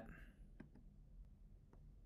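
Near silence with a few faint clicks of a computer mouse as a link is clicked.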